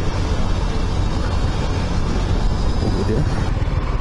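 Motorcycle engine running steadily while riding, with wind rushing over a helmet-mounted camera.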